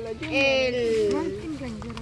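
People's voices: a long drawn-out vocal sound that slowly falls in pitch, with a second voice overlapping it partway through.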